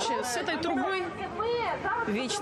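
Speech: a woman talking, with other voices overlapping in a crowd.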